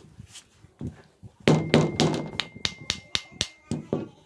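Small metal motorcycle carburetor knocking and tapping against a concrete floor as it is handled and turned over: about a dozen quick, sharp knocks over two seconds, starting about a second and a half in.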